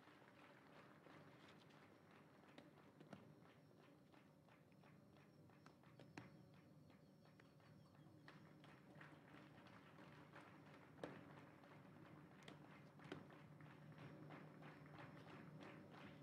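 Near silence: faint open-air ambience with a low steady hum and scattered faint clicks and taps.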